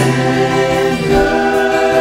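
Song with several voices singing a held chorus line in choir-like harmony over backing music; the low bass note stops about a second in.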